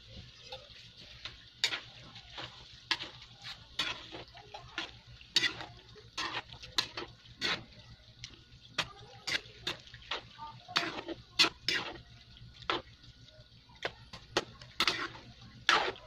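A spoon stirring penne and tomato sauce in a metal pan, with irregular clicks and scrapes as it knocks and drags against the pan's sides, over a faint steady hum.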